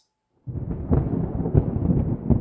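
A deep thunder-like rumble with irregular heavy thumps, starting suddenly about half a second in after a brief silence.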